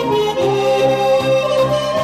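Instrumental music: a melody of held notes over a changing bass line.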